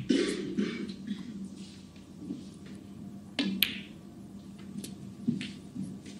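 Snooker balls clicking as a shot is played: the cue tip strikes the cue ball and it knocks into a red. A few sharp clicks stand out, the loudest about three and a half seconds in, over a quiet hush.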